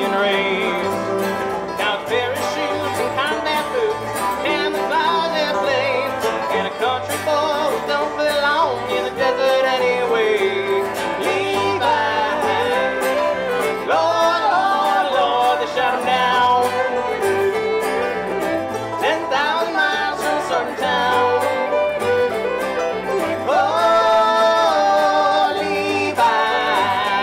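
Bluegrass band playing an instrumental break: a fiddle carries a sliding, wavering melody over banjo picking, guitar and electric bass.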